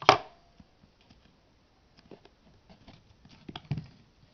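Handling noise: a sharp knock at the very start, then scattered light taps and rustles as fingers press metallic ric-rac trim onto the edge of a tray.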